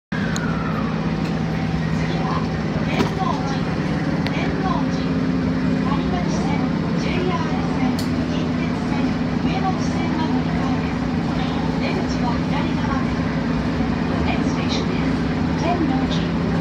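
Osaka Metro Midōsuji Line subway train pulling away from a station and into the tunnel: a steady running rumble with a low motor hum. A couple of sharp clicks come from the wheels and track, one about three seconds in and another about eight seconds in.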